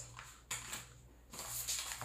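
Faint room tone with a low steady hum and a brief soft rustle about half a second in.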